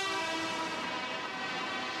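A tractor horn holds a long steady note that fades out within the first second, over the running of tractor engines and street traffic.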